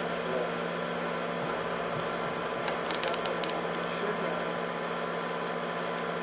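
Steady mechanical hum and whir of a home-movie film projector running, with a few faint clicks about three seconds in.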